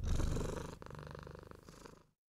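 Domestic cat purring in a steady fast pulse, growing fainter through the stretch and cutting off at the end.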